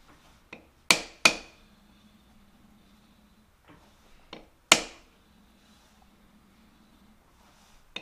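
Soft-faced mallet knocking an aluminum block held in a lathe's four-jaw chuck, each knock with a short metallic ring: two sharp knocks about a second in, lighter taps, and the loudest knock near five seconds. The part is being tapped over to run true against a dial indicator.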